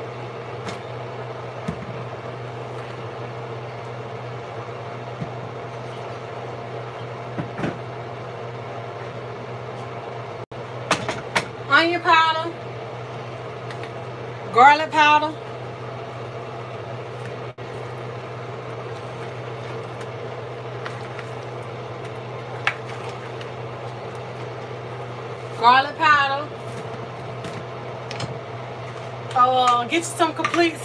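A steady low electrical hum runs throughout, broken three times by short bursts of a woman's voice, about eleven, fifteen and twenty-six seconds in.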